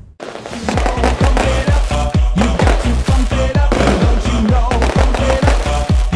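Electronic music with a steady, heavy beat, coming in about half a second in.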